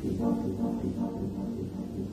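Brass band playing: a sudden louder entry at the start of quick, rhythmic repeated notes over a full low chord, continuing through.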